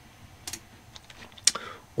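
A few clicks on a laptop's keys, the sharpest about one and a half seconds in.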